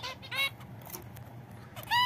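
Zebra finches calling: two short nasal calls, one about half a second in and another near the end, with a quiet stretch between.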